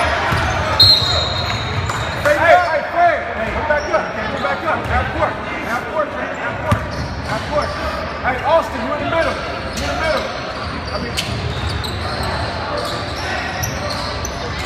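Gym noise during a basketball game: a short high referee's whistle about a second in, then the ball bouncing on the hardwood and the shouts and voices of players and spectators echoing in the hall.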